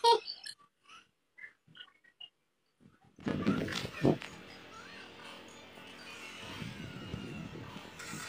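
A group of boys laughing loudly, breaking off within the first second into a few short faint sounds. About three seconds in, background music starts and runs on.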